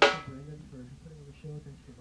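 A single loud hit on a drum kit right at the start, ringing out for about half a second. Quiet low voices follow.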